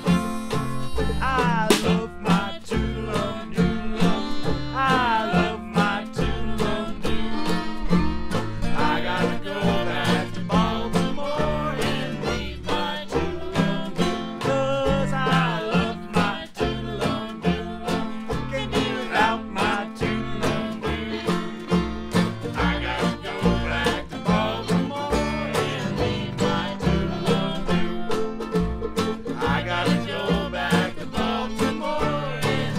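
Old-time jug band music played live, instrumental: harmonica and fiddle over banjo and a drum beaten with sticks, keeping a steady beat.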